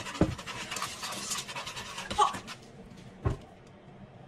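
Chopsticks stirring and scraping thick sauce in a nonstick frying pan, a quick scratchy rustle that stops about two and a half seconds in. A single dull knock follows near the end.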